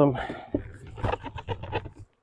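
A nuc box bounced over an open beehive to shake the bees down into it: a rapid, irregular run of short knocks lasting about a second and a half.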